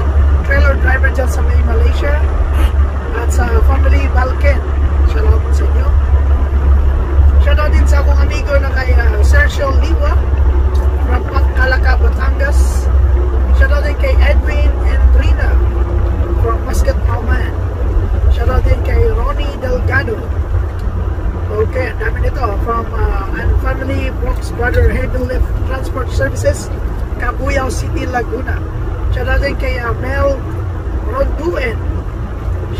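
Steady low rumble of a truck's engine heard inside the cab, under a man's voice. The rumble drops in level about two-thirds of the way through.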